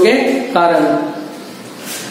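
A man's voice lecturing, trailing off about a second in into a short, quieter pause.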